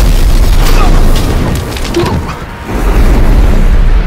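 Film sound effect of an explosion: a loud boom with a deep rumble, easing off midway, then a second loud rumbling swell near the end.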